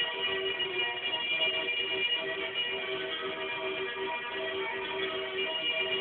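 Music from a record on a Philips AG9102 record player, played through the loudspeaker of a 1930s Philips Symphonie 750 A valve radio, with held notes.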